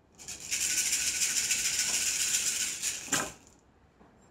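A handful of cowrie shells shaken in cupped hands for a divination cast, a steady rattle lasting about three seconds, ending near the end with a brief clatter as the shells are thrown down onto a cloth-covered table.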